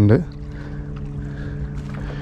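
A steady low engine drone holding one even pitch, heard after a last spoken word.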